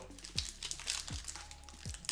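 Foil booster-pack wrapper crinkling and tearing as it is pulled open by hand, over quiet background music with a low beat.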